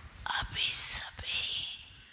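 A woman's breathy, whispered sounds close to the microphone: hissing bursts, the loudest about a second in and a softer one just after.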